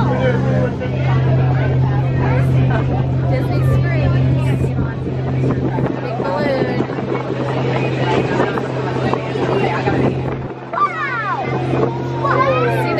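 Passenger boat's engine running with a steady low drone under passengers' chatter. The low rumble drops off about ten seconds in.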